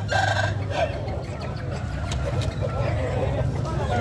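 Crowd of people talking over one another, with roosters crowing among the voices.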